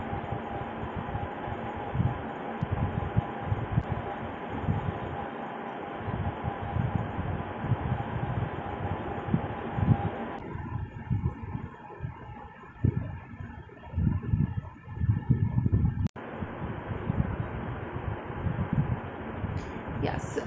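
Steady room noise, a hiss with a faint hum like a running fan, with irregular low bumps throughout. The character of the noise shifts about halfway through, and it drops out for an instant near the end.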